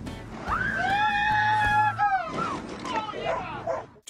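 A rider's long, high-pitched yell that rises at the start and breaks off after about two seconds, followed by a few shorter cries, over background music.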